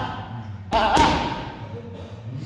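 Boxing punches landing on focus mitts: two sharp smacks, about three-quarters of a second in and again a quarter-second later, with a short shouted "ha" over them.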